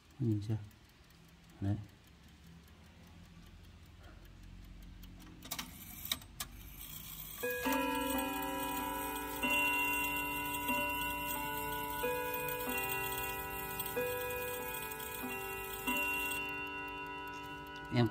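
Mantel clock's chime rods struck in turn by its hammers, playing a chime tune of several ringing notes about one to two seconds apart, after a few clicks from the movement. The notes sound not very crisp, which the owner puts down to hammer heads that have gone soft.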